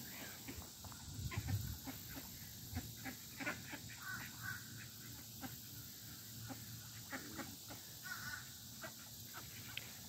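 Scattered faint, short calls from a flock of ducks and Canada geese.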